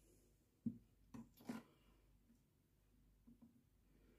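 Near silence: room tone, broken by three short, faint sounds between about half a second and a second and a half in.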